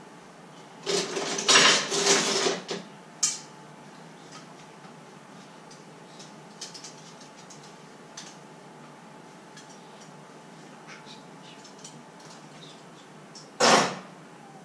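Dishes and kitchenware being handled and put away: a loud clatter of several knocks with a brief ring about a second in, lasting a couple of seconds, then a few light clicks and another sharp clatter near the end.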